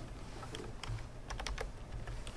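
Computer keyboard keys being tapped, a short run of keystrokes entering a new number, with several quick clicks together about a second and a half in.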